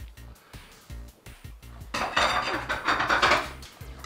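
A fork scraping and clinking against a plate for about a second and a half, starting about halfway in, as the plate is cleared. Quiet background music runs underneath.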